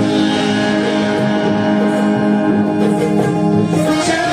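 Indian banjo (a keyed, plucked-string zither) and harmonium playing an instrumental passage, the harmonium holding steady notes under the banjo's plucked melody.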